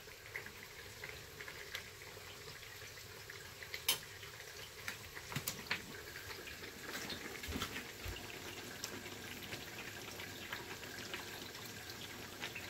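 Kitchen tap running in a thin stream into a stainless steel sink, a steady soft splash, with a few light clicks and knocks, the clearest about four and five and a half seconds in.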